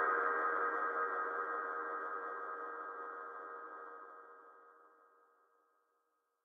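Final sustained chord of an electronic dance track, a held ringing tone that fades steadily out to nothing about five seconds in.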